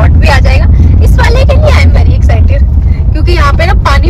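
Voices talking over the steady low rumble of engine and tyres, heard from inside the cabin of a moving Maruti Suzuki S-Cross.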